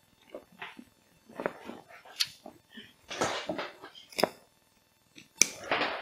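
A roll-top waterproof backpack being handled: the stiff coated waterproof fabric rustles and crinkles in irregular bursts as the rolled top is bent over, with a few sharp clicks.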